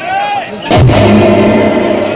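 A single sudden loud bang with a deep thump, a stage drama sound effect or drum hit over the loudspeakers. It cuts into a sliding voice line and music with sustained tones.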